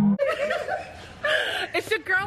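Women laughing and chuckling, with snatches of talk between the laughs.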